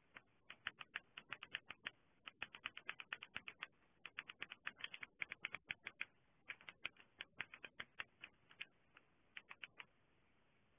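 Typing on a computer keyboard: quick runs of sharp keystrokes broken by short pauses.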